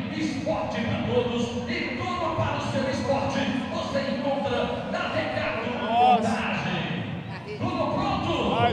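Indistinct chatter of many voices echoing in a large hall, with one louder, brief call rising and falling in pitch about six seconds in.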